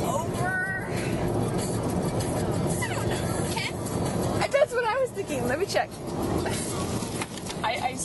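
Steady car road and engine noise heard inside the cabin while driving. A person's voice comes in briefly at the start and again about halfway through.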